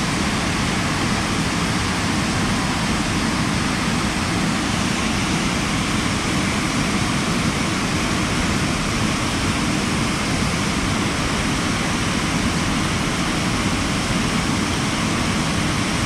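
A waterfall rushing steadily, a loud, even roar of falling water close by.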